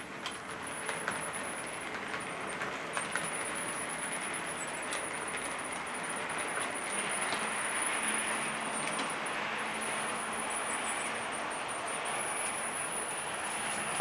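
Model train, a Kleinbahn ÖBB 1044 electric locomotive hauling Heris City Shuttle coaches, running on a layout. It makes a steady rolling rumble of wheels on track, with scattered small clicks and a thin high motor whine. It grows louder, with a low hum, around the middle as the train crosses the truss bridge.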